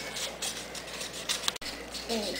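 Felt-tip marker scratching on paper in short strokes over faint room noise, broken by a sudden brief dropout about one and a half seconds in.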